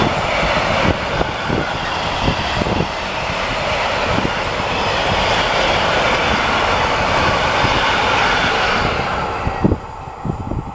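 A freight train of covered box wagons rolling past, a steady rumble and rush of wheels on rail broken by irregular sharp knocks as the wheels cross rail joints. The noise drops away suddenly near the end as the last wagon passes.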